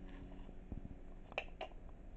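Quiet room tone with a few faint clicks, one a little before the middle and two close together just after.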